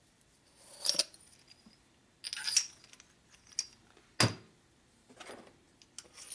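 Small metal pushrod cover parts clinking and tapping together as they are handled and fitted by hand: about five separate clinks, the sharpest about four seconds in.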